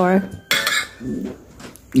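Fork and spoon scraping and clinking against a dinner plate as food is scooped up, with the loudest scrape about half a second in.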